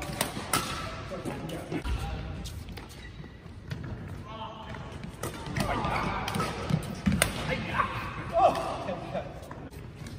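Badminton racket strokes on a shuttlecock: a few sharp cracks, two close together at the start and another about seven seconds in. Footfalls on the court and voices in the gym hall are heard around them.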